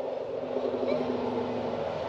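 Steady low hum of a vehicle engine idling, heard from inside the cabin.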